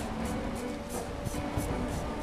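Merkur double-edge travel safety razor with a Feather blade scraping through two-day stubble, a quick run of short, scratchy rasps about five a second as it cuts the beard.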